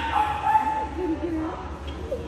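A dog whining: a high, wavering tone that starts suddenly and fades out within the first second, followed by low murmured voices.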